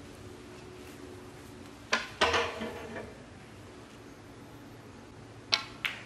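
Snooker balls struck by the cue and clicking against each other: two sharp clicks about two seconds in, followed by a short rattle of further clicks, and another pair of sharp clicks near the end.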